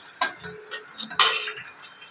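Metal kitchen utensils and dishes clinking as they are handled: four or five sharp clicks, the loudest a little past a second in, ringing briefly after the strike.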